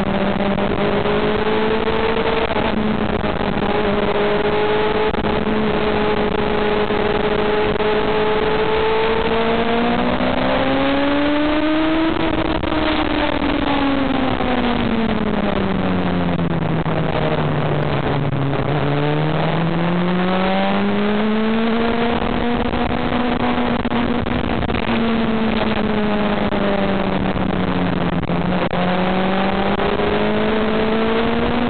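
Sport motorcycle engine heard from a camera mounted on the bike, with a steady rush of wind and road noise underneath. The engine note holds steady, rises about ten seconds in, sinks to a low pitch a few seconds later, climbs again and holds, then dips and rises once more near the end.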